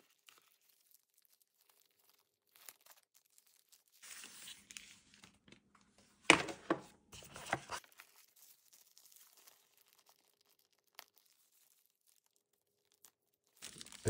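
Crinkling and tearing of the white protective wrap around a boxed gimbal as hands pull at it. It comes in irregular bursts, the loudest from about six to seven and a half seconds in.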